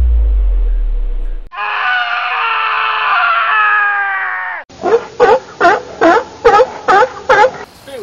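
A low bass note fades out, then a person's voice gives one long held yell of about three seconds, followed by a run of about eight short, evenly spaced loud cries.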